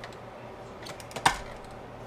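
A few light metal clicks and one sharper clank a little over a second in, from a metal lead-jig mold being worked under a bottom-pour melting pot as the just-poured mold is opened.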